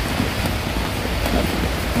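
Heavy rain falling steadily on a fabric canopy awning overhead, a constant hiss.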